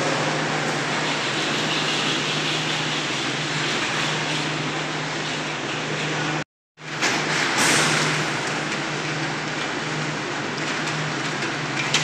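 Girak six-seat detachable gondola's station machinery running: the rows of tyre wheels drive the cabins slowly around the station rail, a steady mechanical running noise over a low, even hum. The sound drops out completely for a moment just past halfway, then carries on the same.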